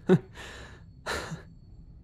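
A man's breathy vocal sounds: a short voiced huff falling in pitch right at the start, the loudest, then a breath in and a sigh out with a falling tail about a second in.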